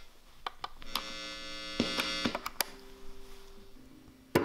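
Instrument cable jack being pushed into an electric guitar's output jack: a few sharp clicks and a loud electrical buzz through the amplifier, then a quieter lingering hum near the end.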